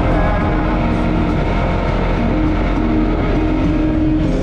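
Side-by-side off-road vehicle running steadily along a muddy trail, its engine drone mixed with background music that carries a melody.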